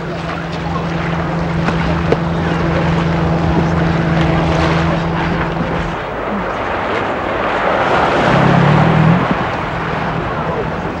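Outboard motor of an inflatable inshore lifeboat running at speed, a steady hum over the rush of water and wind. The hum drops away about six seconds in, leaving mostly the noise of water and wind.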